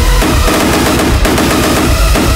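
Loud electronic hardcore dance music: distorted kick drums hammering in a rapid, dense run.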